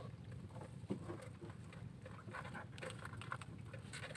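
Wet nylon fishing net being handled by hand while a crab is worked out of the mesh: faint, irregular pattering and small clicks, over a low steady rumble.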